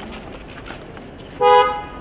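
A car horn giving one short, loud toot about a second and a half in, lasting about half a second, with two notes sounding together. It sounds over steady street and crowd background noise.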